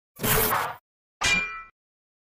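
Logo intro sound effects: a short burst of noise, then a sharp metallic clang that rings briefly and dies away.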